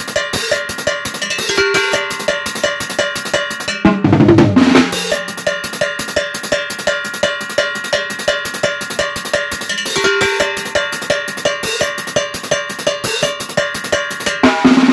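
Drum kit with chrome metal-shelled drums, cymbals and a mounted cowbell played with sticks in a steady, fast rhythm of about four strokes a second. Heavier accented hits land about four seconds in and again about ten seconds in.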